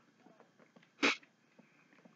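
A man lets out a single short, sharp, explosive burst of breath through his mouth and nose about a second in, with faint small clicks of chewing and handling around it.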